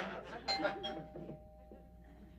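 Two-note doorbell chime: a higher note about half a second in, then a lower one, both ringing on steadily, as studio-audience laughter fades out.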